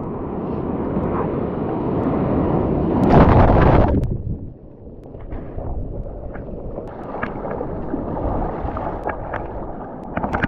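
Whitewater rushing and splashing around a surfboard being paddled out through broken surf, with the loudest wash over the board about three seconds in, lasting about a second. After it come many short, sharp splashes from hand-paddling strokes.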